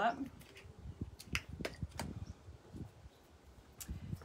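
Faint, scattered clicks as hands twist open the cap of a new bottle of grapeseed oil.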